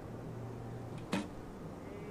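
A recurve bow shot: one sharp snap of the string and limbs on release, about halfway through, over a low steady background hum.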